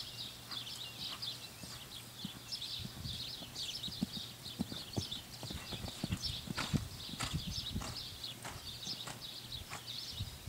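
Hoofbeats of a grey horse cantering on a soft dirt arena: dull thuds in a rolling rhythm, loudest in the middle stretch.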